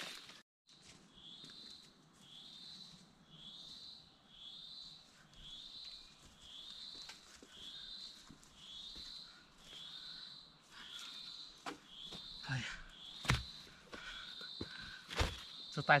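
A high chirping call from a wild animal, repeated about once a second, then held as a steadier high trill for the last few seconds. Near the end come footsteps on the leaf-littered slope and a few sharp thuds.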